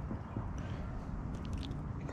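Faint handling sounds of a small sunfish being unhooked by hand from a micro fishing line: a few soft clicks and scratchy rustles, most around a second and a half in, over a steady low rumble.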